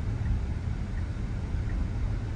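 Steady low road and tyre rumble inside the cabin of a moving Tesla, an electric car, so there is no engine note.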